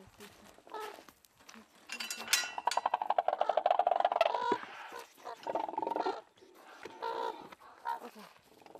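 A metal-framed mesh enclosure gate opened by hand: a sharp squeak about two seconds in, then a loud rapid rattling for a couple of seconds.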